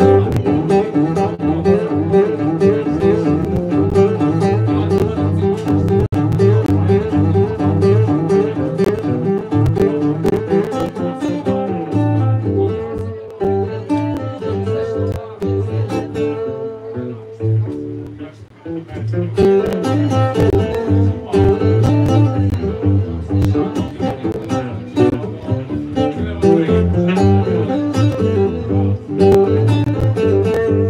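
Acoustic guitar played live, a steady run of plucked and strummed notes. The playing thins and softens in the middle, nearly dropping out a little past halfway, then picks up again.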